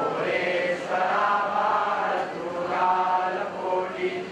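A group of voices chanting a Hindu devotional prayer in unison, in long held phrases.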